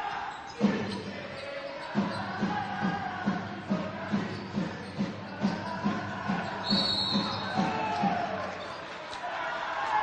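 Basketball being dribbled on a sports-hall court, a steady run of bounces about two to three a second that stops near the end. A short high whistle blast sounds about seven seconds in, the referee calling a foul. Crowd voices murmur in the hall.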